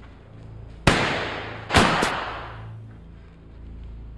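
Three pistol shots: one about a second in, then two in quick succession near the two-second mark. Each crack rings out with a long echo in a large sheet-metal workshop.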